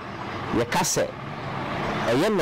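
A man's voice briefly speaking a syllable or two in a pause of talk, with a steady background noise in between.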